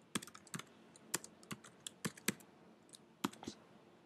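Typing on a computer keyboard: a quick, irregular run of about a dozen keystrokes, stopping about half a second before the end.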